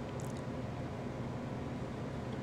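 Steady low background hum of room noise, like a running fan or air conditioner, with one brief faint high rustle about a quarter second in.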